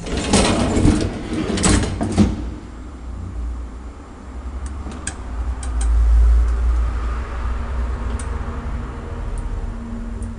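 Old passenger elevator modernised by Ekmans Hiss: its door slides and clatters with several knocks over the first two seconds, then the lift runs with a steady low hum and a few faint clicks, swelling about six seconds in.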